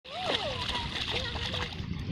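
A Labrador retriever wading through shallow lake water, its legs splashing.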